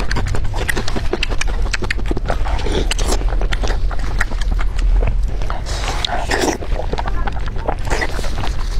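Close-miked wet chewing and lip-smacking on fatty roasted pork belly, with many sharp sticky clicks as plastic-gloved hands pull the greasy meat apart, over a steady low hum.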